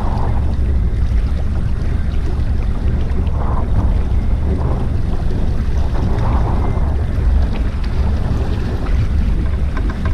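Steady low rumble of wind on the microphone and water rushing past the hull of a small boat moving under power while trolling, with the motor running beneath it.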